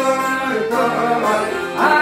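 Live Albanian folk music: long-necked plucked lutes (çifteli), a violin and an accordion playing together, with a man singing.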